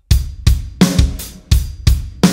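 Acoustic drum kit played at a slow tempo: kick drum and snare strokes with hi-hat and cymbal wash, about three strokes a second. It is the second section of a syncopated drum fill, with an added kick drum.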